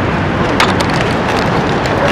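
Wind buffeting an outdoor microphone on an open beach: a steady rushing noise with a heavy low rumble, and a short click about half a second in.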